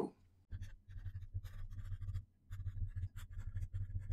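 Marker pen writing on paper in a run of short scratchy strokes, with a brief pause a little after two seconds in.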